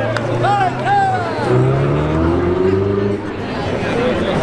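Ferrari 488's twin-turbo V8 accelerating hard away, its pitch climbing for about a second and a half before easing off, with spectators' voices shouting over the start.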